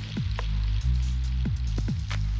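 Background music: low sustained bass notes that change about a second in, with a few faint ticks.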